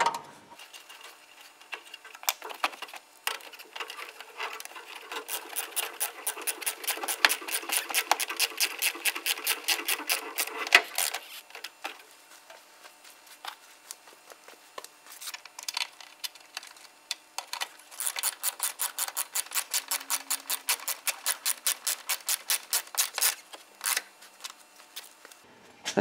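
Ratchet wrench clicking rapidly as bolts are run in and tightened, in two long runs of evenly spaced clicks with a pause of several seconds between them.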